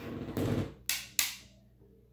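Close handling noise by the microphone: a rustle, then two sharp taps about a third of a second apart, the second the louder.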